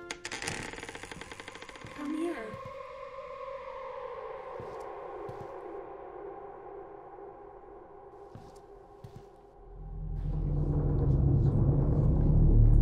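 Horror film score: a sudden rattling sting, then sustained tones that slowly sink in pitch and thin out. About ten seconds in, a deep rumble swells and grows loud, building tension.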